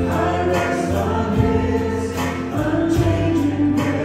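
Church praise band performing a worship song: several voices singing together over live band accompaniment.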